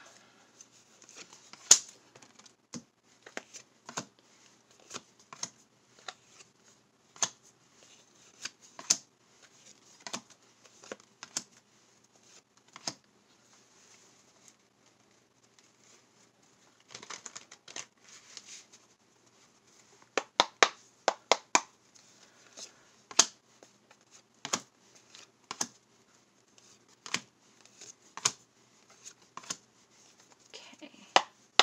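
Tarot cards being handled on a wooden desk: a string of irregular sharp clicks and slaps as cards are tapped and set down, with a short rustle of shuffling a little past halfway.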